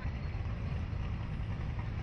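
Wind buffeting an open-air ride-mounted camera microphone high above the ground: a steady, fluttering low rumble.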